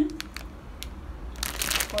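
Plastic instant-noodle packet crinkling as it is handled and turned over: a few light crackles at first, then a denser burst of crinkling near the end.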